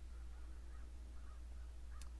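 Quiet background in a pause between words: a steady low rumble with a few faint, brief higher sounds.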